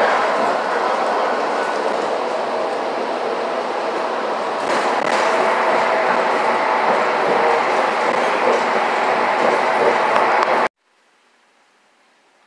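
Steady running noise heard from inside a moving public transit vehicle's cabin, which cuts off suddenly near the end.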